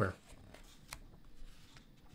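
Faint rustle of paper with a sharp click about a second in and a few light ticks near the end: a picture-book page being handled and turned.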